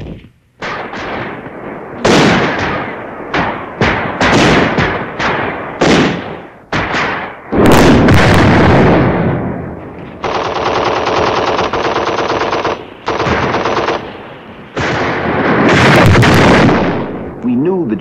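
Gunfire in a firefight. A string of loud single shots rings out, each with an echoing tail, then a long burst of rapid machine-gun fire comes about ten seconds in, followed by more heavy firing near the end.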